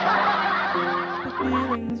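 A burst of laughter lasting under two seconds, loud over a soft piano backing track that keeps playing underneath.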